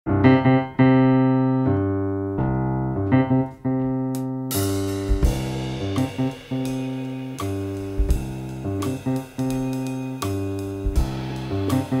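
Jazz piano playing a repeated figure of sustained chords over low bass notes. About four and a half seconds in, percussion joins with a high shimmer and struck accents under the piano.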